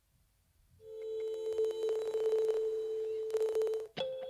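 A single steady synthesizer note, held for about three seconds from about a second in and stopping suddenly near the end.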